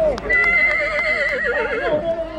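A dapple-grey heavy draft horse whinnying: one long call with a quavering pitch that starts about a quarter of a second in and lasts well over a second.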